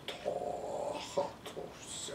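A person's wordless throat sounds, several short voice-like bursts, the longest in the first second. The speaker later puts them down to clearing away entities that were clogging the passages.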